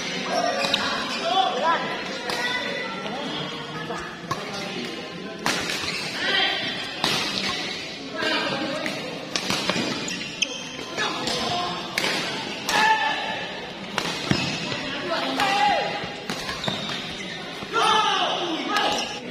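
Badminton doubles rally: rackets striking the shuttlecock again and again at irregular intervals, sharp cracks that echo in a large hall, with people talking and calling out over the play.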